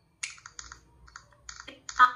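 Android TalkBack screen reader on a Lava Blaze 2 phone playing a quick run of short clicky feedback blips, about five a second, as a finger moves over the touchscreen, with the loudest near the end.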